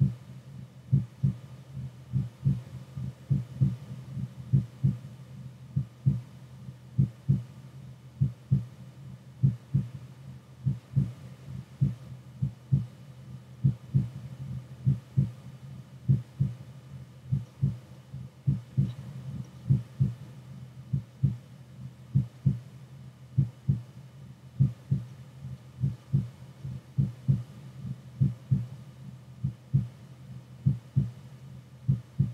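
A slow, steady heartbeat: paired lub-dub thumps repeating about once a second without a break.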